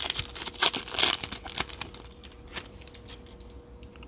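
Foil wrapper of a Topps Chrome baseball card pack crinkling as it is torn open and peeled back. The crackling is dense for about two and a half seconds, then thins out.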